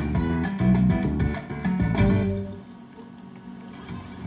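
IGT Exotic Island video slot machine playing a short tune while its reels spin. The tune fades out about two and a half seconds in as the reels land, and it is quieter after that.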